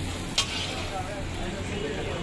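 Oil and burger buns sizzling on a hot flat iron griddle, a steady frying hiss, with one sharp clank of a metal spatula against the griddle about half a second in.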